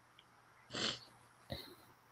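Near silence on a video call, broken by a short breathy sound, like a sniff or exhale, about a second in and a brief soft click shortly after.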